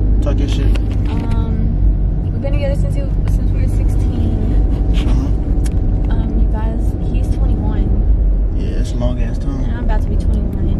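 Steady low road and engine rumble inside a moving car's cabin, with voices heard now and then over it.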